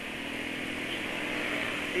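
Yamaha scooter engine running steadily at low speed in dense traffic, a faint even hum under a constant hiss of wind and road noise.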